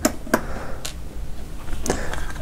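Small plastic clicks and taps as the housing of a cheap solar garden light is handled during disassembly, four scattered clicks over a low steady background.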